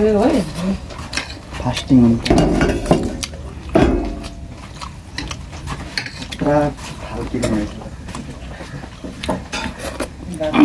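Fingers gathering rice against a plate, with many short clinks and taps of the plate. A few brief bits of voice come in between.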